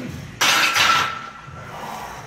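Loaded barbell set down into the steel power rack's hooks: a sudden loud clatter about half a second in, with a ringing metal note that fades over about a second.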